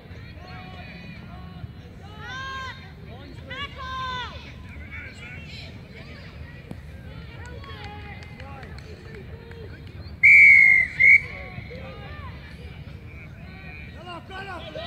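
Referee's whistle in a junior rugby league match: one long blast followed by a short one about ten seconds in, loud over the spectators' voices and shouting.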